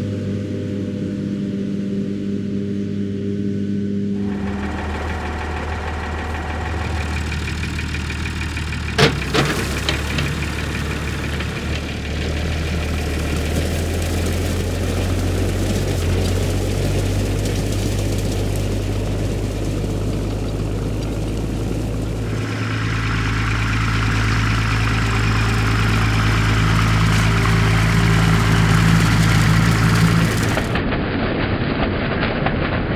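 A steady hum for the first four seconds gives way to a Massey Ferguson 3085 tractor's diesel engine running steadily under load while it drives a SIP Spider 615 Pro rotary tedder through cut grass. A few sharp knocks come about nine seconds in. The engine sound grows louder toward the end.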